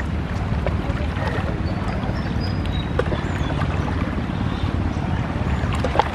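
A river launch's diesel engine running steadily, a low drone under the rush of river water and wind on the microphone.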